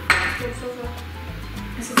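White plastic electric kettle clicking sharply twice as it is handled, once just after the start and once near the end, over background music with a steady beat.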